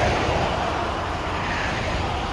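Highway traffic going by: a steady rush of tyre and engine noise with a low rumble, a little louder at the start and then easing as a vehicle moves away.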